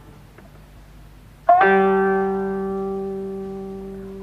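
A single plucked note on a Japanese string instrument of the jiuta ensemble (koto or shamisen), struck sharply about a second and a half in after a quiet pause, then ringing on and slowly fading.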